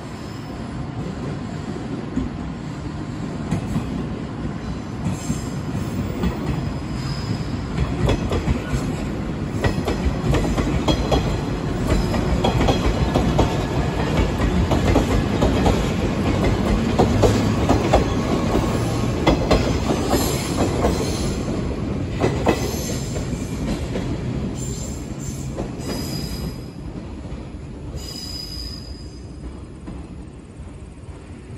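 A 415 series electric multiple unit runs past at arrival speed, its wheels clicking in a steady rhythm over the rail joints with brief high wheel squeals. It grows louder toward the middle as the cars pass close by, then fades as the train moves on into the station.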